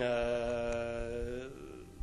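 A man's voice holding one long, steady hesitation vowel, a drawn-out 'eee' filler, for about a second and a half, then trailing off.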